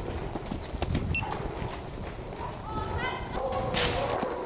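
Hounds crying and distant shouting around a farm barn, with wind rumbling on the microphone. A rising yelp comes about three seconds in, and a horse gives a short snort near the end.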